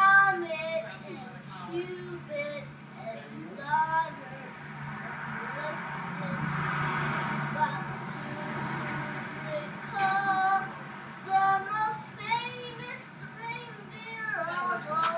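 A young child singing in short phrases, played back from an old home-video recording through a TV speaker, with a steady low hum underneath. A rushing noise swells and fades in the middle.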